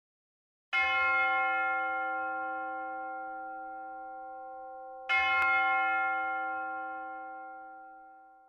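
A bell-like chime struck twice, first just under a second in and again about four seconds later. Each stroke rings with several steady tones and fades away slowly.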